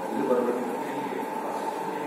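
Steady mechanical running noise with voices in the background.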